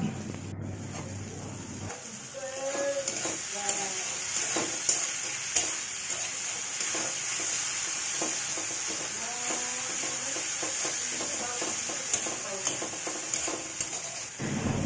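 Onion, green chillies and dried fish frying in oil in an aluminium kadai with a steady sizzle. A metal spatula stirs and scrapes against the pan, with repeated scrapes and clicks.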